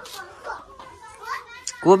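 A child's voice speaking softly, with a louder voice starting near the end.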